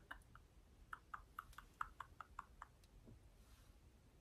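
Faint, quick light taps on a small plastic eyeshadow palette, about a dozen at roughly four or five a second, stopping after about two and a half seconds.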